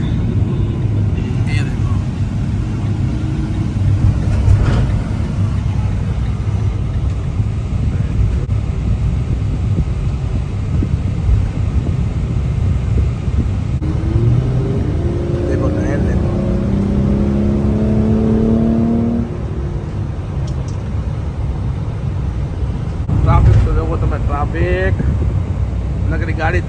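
Steady low road and engine rumble of a vehicle driving on a highway, heard from inside the cabin. In the middle a pitched drone rises slowly for about five seconds, like a nearby vehicle accelerating.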